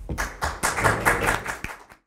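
Applause from a small audience, many hands clapping together, fading out near the end.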